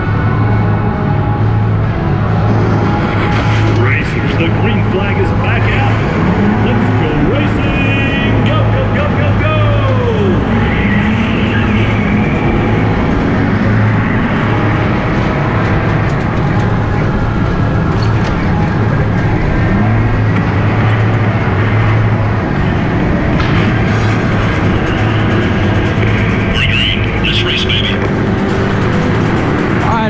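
Go-kart running on an indoor track, heard from on board, with loud music in the background and a steady low hum throughout.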